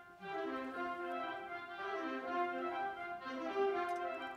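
Symphonic concert band of woodwinds and brass playing sustained chords. After a brief break at the start, new phrases swell in about every second and a half.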